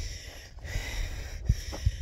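Low wind rumble on the microphone, with two short knocks in the second half.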